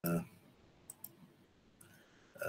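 Audio cuts back in with a brief voiced sound from a man, then a few sharp computer-mouse clicks, two close together about a second in and more near the end.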